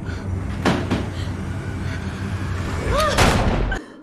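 Horror-film soundtrack: a low, steady, ominous drone with a sharp hit under a second in, then a louder gunshot about three seconds in, with a brief pitched cry over it. The sound cuts off suddenly just before the end.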